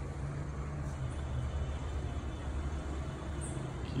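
Steady street traffic noise under a low, even engine hum.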